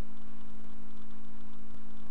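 Steady hiss with a constant low electrical hum: the background noise of the recording's microphone and line, with no other clear sound.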